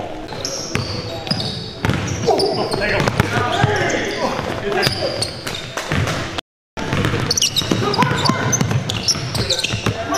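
Basketball game sounds in a gym: sneakers squeaking on the hardwood, a ball bouncing, and indistinct players' voices, all echoing in the hall. The sound drops out completely for a moment a little past halfway.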